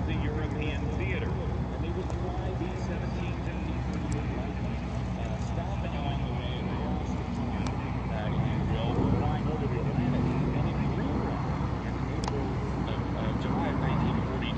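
Lockheed P-38 Lightning warbirds passing overhead in formation, their twin Allison V-12 piston engines giving a steady drone that swells a little partway through.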